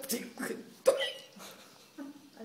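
An elderly woman breaking into laughter: short, sharp vocal bursts, the two strongest about a second apart.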